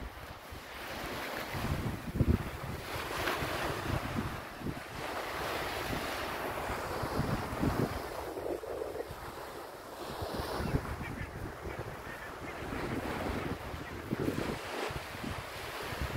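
Wind buffeting the microphone in irregular gusts, over the steady wash of small waves breaking on a beach below.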